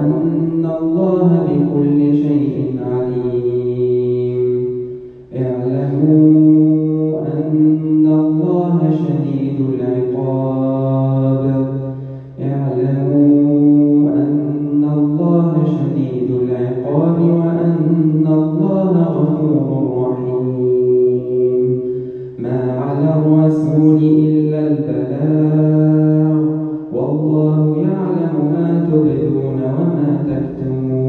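A man's solo voice reciting the Quran in a slow, melodic tajweed style. He holds long drawn-out notes in phrases of several seconds, with short breaths between them.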